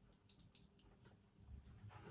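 Near silence, with faint, soft wet sounds of hands rubbing cleansing gel between the palms.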